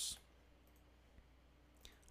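Near silence with one faint, short click a little over a second in: a computer mouse button being clicked.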